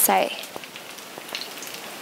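Pieces of food frying in shallow oil in a non-stick pan, a steady faint sizzle, with a short spoken word at the start.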